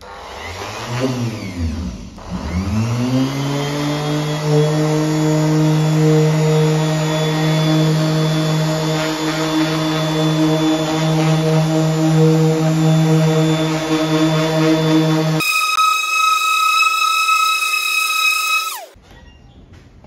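Electric orbital sander wet-sanding a car's paint with very light paper to cut off specks of paint overspray before compounding. Its motor whine climbs as it spins up, dips and climbs again about two seconds in, then runs steadily. Near the end it changes to a higher whine for a few seconds and stops sharply.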